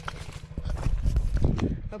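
Footsteps crunching on loose stones of a rocky trail. About half a second in, a louder low rumble comes on the microphone as the handheld camera is turned around.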